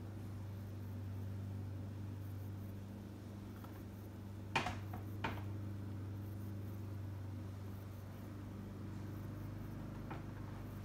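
A lawn mower running steadily outside, heard from indoors as a faint, low, even hum. Two sharp clicks come about four and a half and five seconds in.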